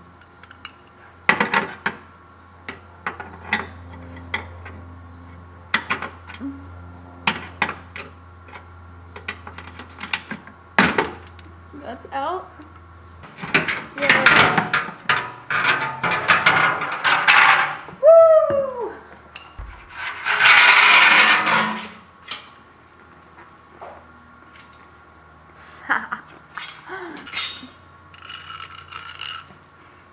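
Scattered clicks and taps of a flathead screwdriver turning out the plastic quarter-turn fasteners of a car's under tray, with two longer scraping rustles about halfway through as the under tray panel is pulled down.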